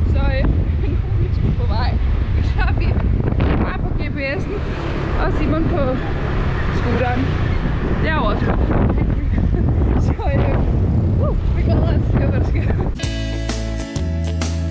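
Wind buffeting the microphone on a moving motor scooter, a loud low rumble under a woman talking. Music with a plucked guitar starts about a second before the end.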